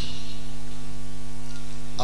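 Loud, steady electrical mains hum through the public-address sound system: a low buzz made of evenly spaced tones that does not change.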